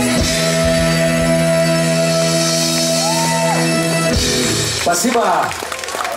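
Live rock band holding a sustained final chord that stops about four seconds in, ending the song. Shouts and cheering from the audience follow.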